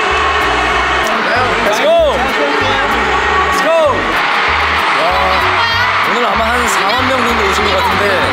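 Live pop music playing loud over a stadium sound system, with a pulsing bass beat and singing, over the noise of a large cheering crowd, described as tremendous.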